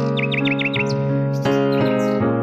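Soft instrumental music of held keyboard chords, changing chord about one and a half seconds in, with a run of about five quick bird chirps over it in the first second.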